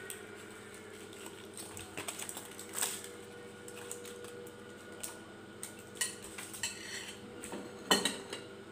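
A metal spoon scraping and clinking against a plate and an aluminium-foil packet as shrimp curry is scooped out, with some crinkling of the foil. The knocks come at scattered moments, the loudest just before the end.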